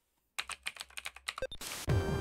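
Computer keyboard typing: a quick, uneven run of key clicks lasting about a second. Electronic music starts just before the end.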